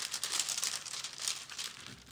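Clear plastic cover film on a diamond painting canvas crinkling irregularly under the hands as it is handled and pressed down.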